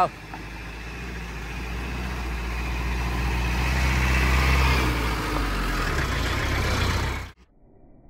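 Tata truck's diesel engine running at low speed as the loaded truck crawls up the dirt track and closes in. It grows steadily louder, peaks about four to five seconds in, and cuts off suddenly about seven seconds in.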